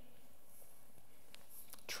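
A pause in a man's speech: steady, faint room hiss, with one faint click about two-thirds of the way through and his voice starting again right at the end.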